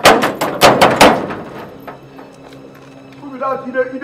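Hand knocking hard and fast on a metal gate, about eight loud knocks in the first second, then stopping.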